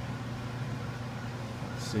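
Steady low background hum with a faint even hiss and no distinct events, ending as a man starts to speak.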